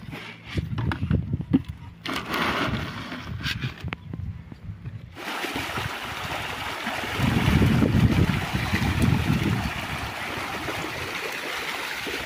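Feed-sack and basin handling, then, from about five seconds in, steady splashing and churning of a crowded shoal of pangasius catfish thrashing at the pond surface as they feed.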